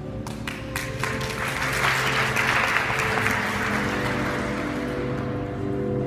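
Figure skating program music playing over the rink's sound system, with audience applause that starts with a few scattered claps, swells, and fades out after about five seconds.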